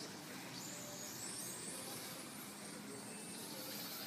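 Faint high-pitched whine of a small RC car's motor, rising and falling in pitch as it speeds up and slows around the track, over a steady background hiss.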